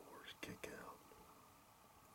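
Faint whispering, a few words in the first second.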